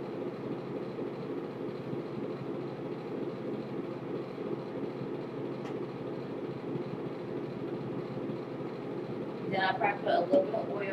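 A steady low hum of room noise, even throughout, with faint hand sounds lost beneath it. A brief voice-like sound comes near the end.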